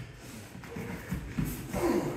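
Bare feet shuffling on foam martial-arts mats and gi cloth rustling as two people step in and grip, with soft thuds in the second half.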